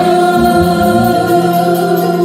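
A group of women singing a Christian worship song together into microphones, holding long, steady notes.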